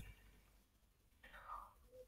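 Near silence: room tone, with one faint, short, soft sound a little past halfway through.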